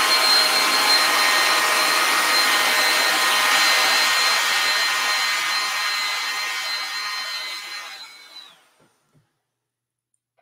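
JCPenney handheld hair dryer blowing on a wet watercolor painting to dry it, a steady rush of air with a high motor whine. It grows fainter over several seconds, then is switched off about eight and a half seconds in, the whine dropping as the motor stops.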